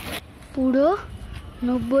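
Speech: a short vocal sound rising in pitch about half a second in, then talking starts near the end.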